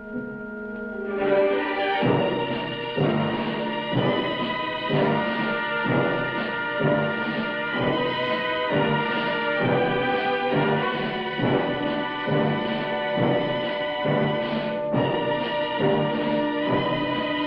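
Orchestral film-score music. It swells in about a second in, then moves on a steady pulse of about one stroke a second.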